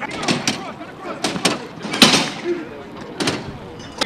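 Sharp smacks, about six of them, among men's shouted voices on a football practice field; the loudest comes about two seconds in.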